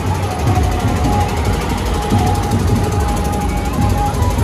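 Loud, bass-heavy dance music from a DJ sound system, playing without a break, with crowd voices mixed in.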